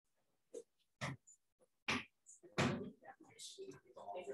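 A few short knocks and bumps of people moving in the room, the loudest about two and a half seconds in, with low voices talking near the end.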